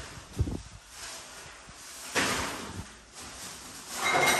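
Plastic bin bag rustling as a dustpan of swept floor debris is emptied into it, with a short knock about half a second in and a louder rustle of debris going into the bag a couple of seconds later.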